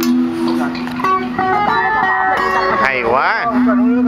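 Guitar and voice performing a song: the guitar picks single-note melody lines while a singer holds long notes with a wide vibrato.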